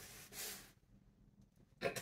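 A woman's short breathy exhale, then a brief chuckle near the end.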